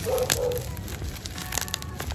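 Clear plastic wrapping crinkling and crackling as a small wrapped bottle is unwrapped by hand, with a cluster of sharper crackles about a second and a half in. A brief hummed voice sounds just at the start.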